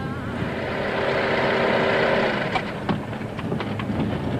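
A vehicle's drone, steady in pitch, swells to a peak about two seconds in and then fades, with a few sharp clicks near the end.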